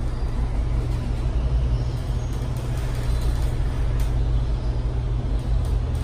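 Glass-walled elevator car descending, a steady low rumble of the moving cab.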